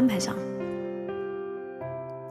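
Instrumental backing track of a slow ballad playing sustained keyboard chords. The chord changes about half a second in, again about a second in, and shortly before the end. A voice trails off just as it begins.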